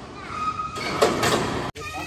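A brief metallic squeal, then a louder scraping rush as a hoisted bundle of steel tubing shifts against metal. The sound stops abruptly near the end.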